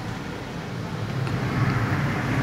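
Steady background noise, a low rumble with hiss, swelling slightly toward the end.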